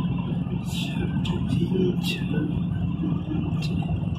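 Steady engine and road hum heard from inside a moving vehicle's cabin, cruising at a constant speed.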